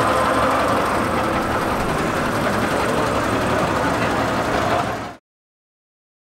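Old vintage car engine idling steadily, with faint crowd chatter behind it; the sound cuts off suddenly about five seconds in.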